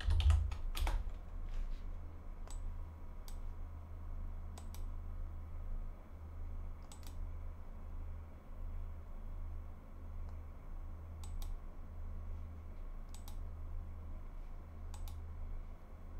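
Scattered, unhurried clicks of a computer keyboard and mouse, a dozen or so spread irregularly with long gaps, over a steady low electrical hum. A low bump near the start is the loudest sound.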